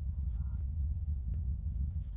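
A steady low rumble with no clear beat or pitch change.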